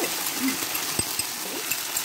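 Frying pan of pork belly and vegetables sizzling steadily as sweet and sour chilli sauce is scraped in, with one sharp tap about halfway through.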